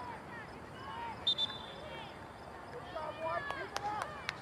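Open-air voices of players and spectators calling and talking across a soccer field, with a short, high, whistle-like tone about a second in and a few sharp knocks near the end.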